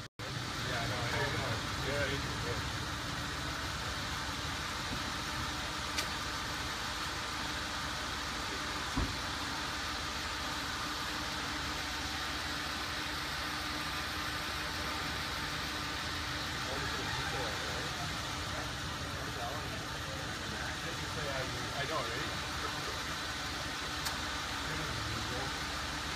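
Steady hum of a stretch limousine's engine idling, with faint indistinct voices of people standing near it and a single soft knock about nine seconds in.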